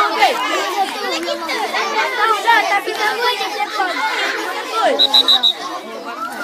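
Many children's voices shouting and chattering at once, overlapping, with four short high beeps just before the end.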